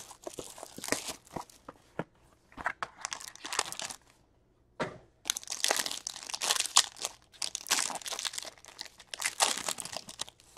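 A hockey card pack's wrapper being torn open and crinkled by hand, in irregular crackling bursts. There is a short pause about four seconds in, and it is densest and loudest in the second half.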